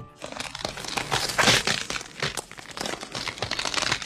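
Horror film sound effects: a dense run of irregular crackling over music, loudest about a second and a half in, as a creature moves on screen.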